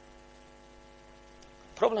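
Faint, steady electrical mains hum in a pause between words, with a man's voice starting near the end.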